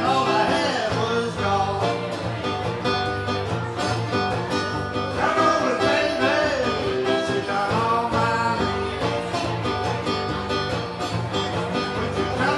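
A man singing to his own strummed acoustic guitar, played live; the guitar runs steadily while the voice comes in phrases, near the start and again about five to seven seconds in.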